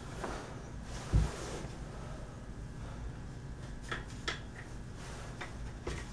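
Handling sounds of a wooden recurve bow being strung as the string is seated in the limb-tip grooves. A dull low thump comes about a second in, then a few light clicks and taps.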